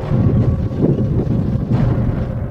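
Deep, low rumble with irregular surges: sound-effect rumbling for meteors striking a molten early Earth.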